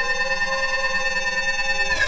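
Electronic synthesizer drone: a steady cluster of held, bell-like tones with many overtones, which bends downward and breaks off near the end.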